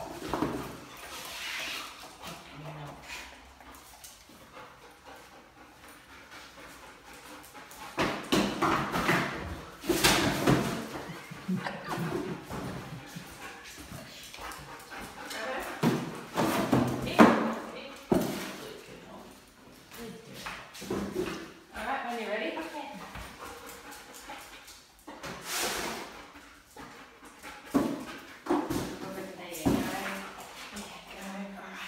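A dog searching among cardboard boxes on a tiled floor: irregular knocks, scrapes and rustles of the boxes being bumped, stepped on and shifted, coming in clusters with quieter gaps between them.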